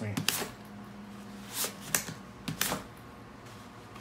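North Face Access 22L backpack opened and shut by hand, its closures giving about six sharp clicks and pops.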